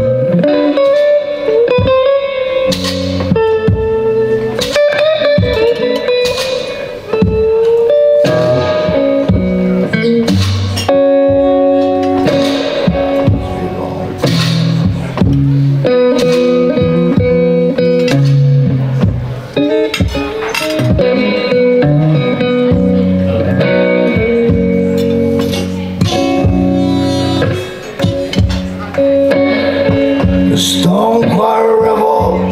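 Solo blues played on an electric guitar, with a neck-rack harmonica playing long held notes, some bent in pitch, over the guitar. No singing.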